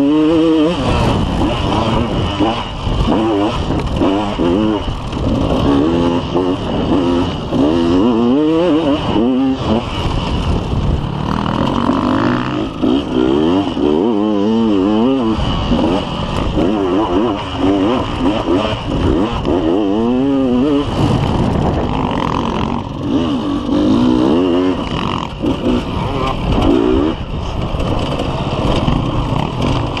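Dirt bike engine heard from a camera mounted on the bike, revving up and down over and over as the rider works the throttle and gears on rough ground.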